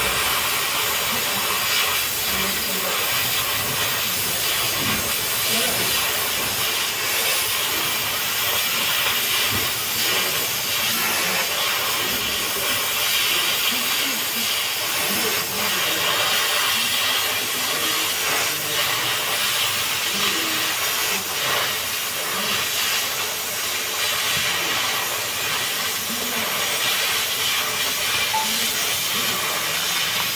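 Oxy-fuel gas cutting torch hissing steadily as its flame and oxygen jet cut through a steel plate.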